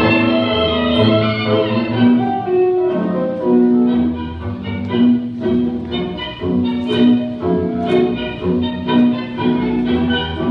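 Tango orchestra music, with violins carrying a held melody over piano. From about four seconds in, the notes turn short and accented, about two to a second.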